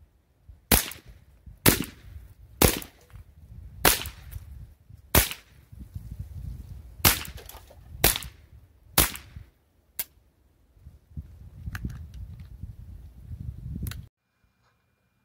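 .22 LR rifle fired about nine times in quick succession, roughly one shot a second, each a sharp crack; the last shot is weaker.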